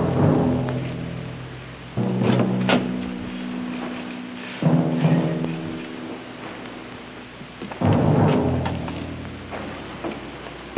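Dramatic orchestral underscore: four loud sustained chords, each struck suddenly and fading away over two to three seconds.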